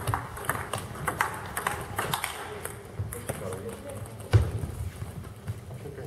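Table tennis balls clicking off bats and tables in an irregular patter, from the rally at the near table and from the other tables around it, with voices in the hall. A single heavy thump about four seconds in is the loudest sound.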